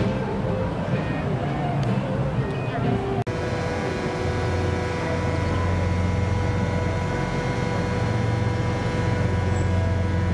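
City street ambience: background voices and street noise, then after a sudden cut about three seconds in, a steady low traffic hum with several faint steady whining tones over it.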